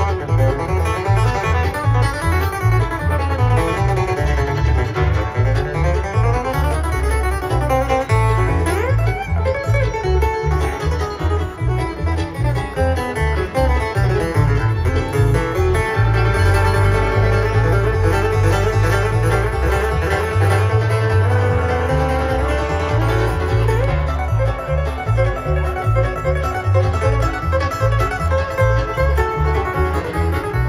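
Bluegrass band playing live through a large PA in an instrumental break: fast picked acoustic guitar over banjo, with a steady pulsing bass beneath.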